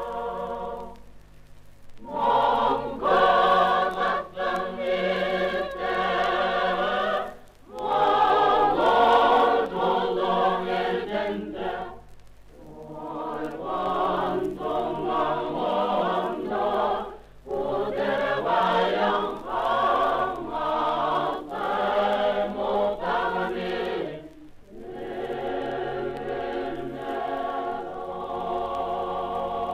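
A mixed choir singing in phrases of a few seconds each, with short breaks between them, about five times.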